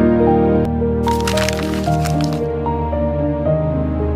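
Gentle background music with sustained notes. About a second in, a burst of noise lasts about a second and a half over the music.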